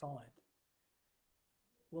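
A man's speaking voice ends a word, then about a second and a half of near silence, then his speech starts again near the end.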